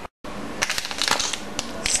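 Crinkling of a plastic Snickers candy-bar wrapper being handled, a run of irregular crackles and sharp clicks.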